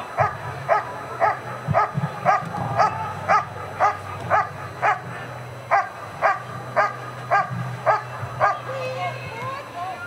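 A German Shepherd Dog barking steadily at the helper in the blind during an IPO protection hold-and-bark, about two sharp barks a second. The barking stops near the end as the dog breaks off.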